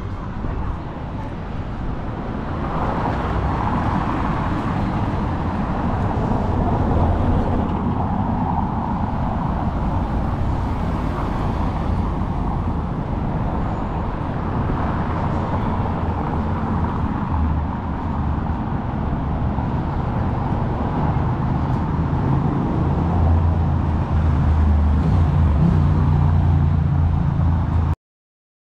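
Street traffic: cars passing along a city street, a steady wash of tyre and engine noise with a low rumble that grows heavier in the last few seconds.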